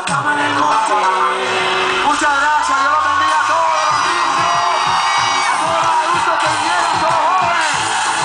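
Live reggaeton music played loud through a concert PA, with vocals and whoops from the crowd.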